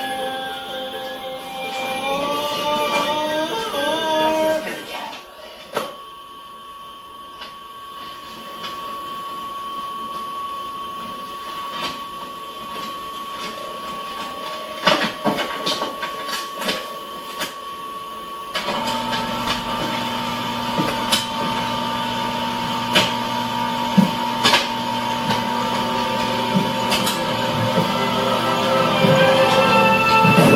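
Photocopier running: a steady high whine with scattered clicks as the lid and paper are handled, changing about two-thirds of the way through to a lower steady hum. Music fades out in the first few seconds.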